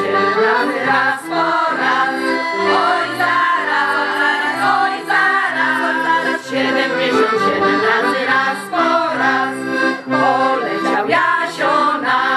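Accordion playing a lively folk dance tune, sustained chords under a running melody.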